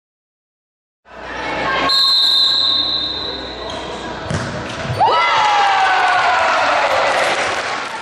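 A referee's whistle blows a steady note for about two seconds. The ball is struck in a futsal penalty kick, and then players and spectators shout and cheer as the penalty is scored.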